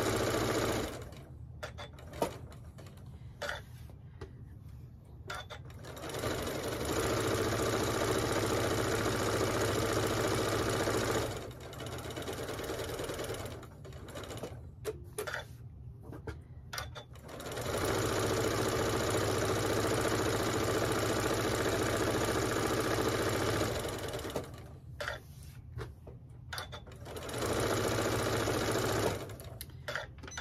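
Janome 9400 sewing machine stitching a seam around a fabric square in steady runs of about five seconds. It stops three times, with a few light clicks in each pause, as the square is turned at its corners.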